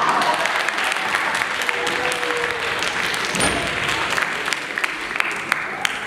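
Audience applauding, a steady wash of clapping with individual sharp claps standing out, easing off near the end.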